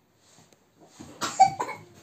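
A person coughing, a short run of coughs starting about a second in.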